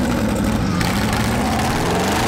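Citroën GT concept supercar's engine running loud, a dense steady exhaust note whose pitch wavers slightly, with a person laughing over it about a second in.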